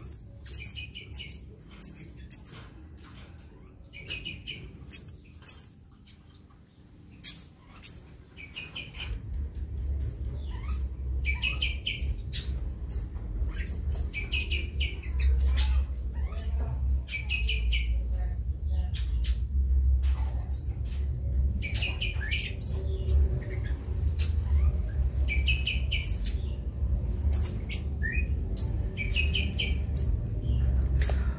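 Young olive-backed sunbird calling in short, sharp chirps, with a quick run of loud ones in the first few seconds and more scattered through. From about nine seconds a low steady rumble runs underneath.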